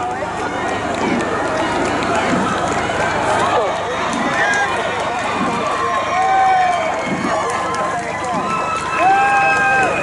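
Spectators on the riverbank shouting and cheering a passing rowing eight, many voices overlapping, with long held shouts about six and nine seconds in.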